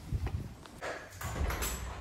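Footsteps of shoes on a hard floor, a few irregular clacks.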